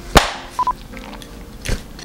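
A sharp clap-like click, then a short electronic beep in one steady tone, like a camcorder's record beep, and a brief whoosh near the end.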